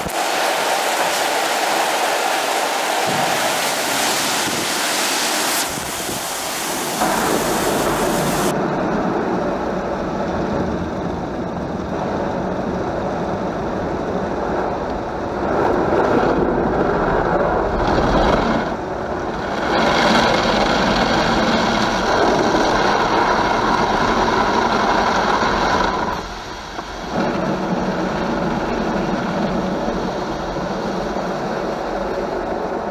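Automatic car wash running: a steady rush of water spray and spinning brushes. About eight seconds in the sound turns muffled, heard from inside the car as the brushes and water sweep over the body and windows, swelling and easing as they pass.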